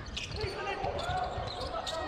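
Basketball being dribbled on a hardwood court, a run of low thuds, with a few short sneaker squeaks and players' voices in an arena with no crowd noise.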